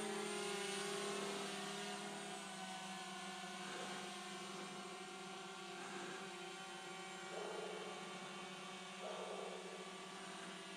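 DJI Mavic Mini quadcopter's propellers whining in flight, a steady buzz of several pitches that fades a little over the first few seconds as it moves away, then holds faintly.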